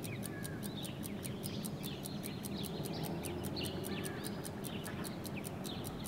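Birds chirping faintly and now and then over a steady background hiss.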